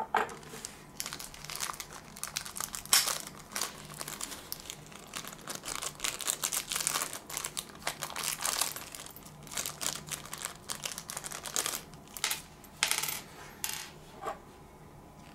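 Hands handling a plastic model airplane and its packaging: a continuous run of small clicks, taps and crinkling rustles. Sharper, louder clicks come right at the start, about three seconds in, and twice near the end.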